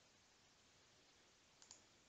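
Near silence: room tone, with a couple of faint computer-mouse clicks near the end.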